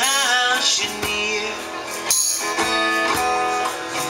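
Live acoustic guitar strummed with percussion strikes keeping time. A man's voice sings a wavering note in the first second.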